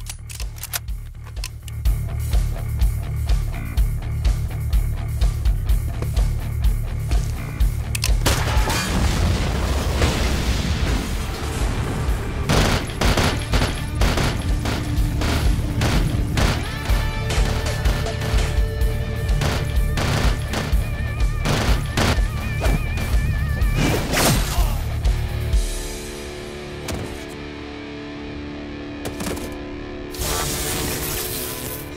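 Film gunfight: rapid handgun fire laid over driving music with a heavy beat. The shots come thick from about eight seconds in to near the end, when the shooting and the deep beat stop and only softer music is left.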